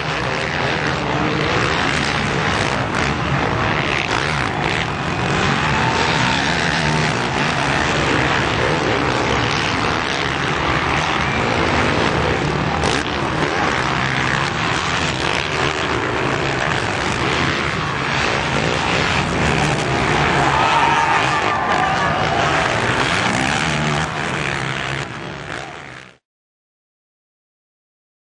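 Motocross dirt bike engines running and revving on the track over steady background noise, with the pitch rising and falling as the bikes rev, most plainly about six seconds in and again past twenty seconds.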